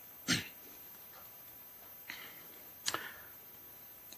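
Quiet room tone broken by short noises close to the microphone: a brief puff of breath about a third of a second in, a fainter one around two seconds, and a sharp double click near three seconds.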